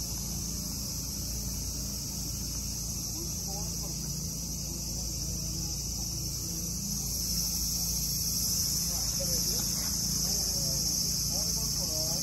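Steady high-pitched chorus of insects, swelling slightly about seven seconds in, with faint voices in the background.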